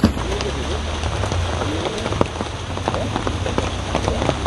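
Steady rain falling, with individual drops ticking sharply on nearby surfaces such as an umbrella and a car body, over a steady low rumble.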